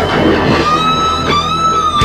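Rock music with an electric guitar lead holding a long note, with slight bends, over the band's backing. No vocals.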